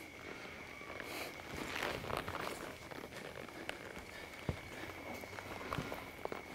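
Faint, irregular hoofbeats of a cutting horse and a calf moving on soft, deep arena dirt. The horse stops and turns with scattered dull thuds and shuffles.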